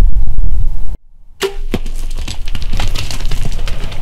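A bow shot at a deer: a sharp crack of the bowstring release and arrow strike about a second and a half in, with a second crack just after. This is followed by a run of crackling and rustling as the deer crashes off through dry brush. Before it, a loud low rumble cuts off abruptly about a second in.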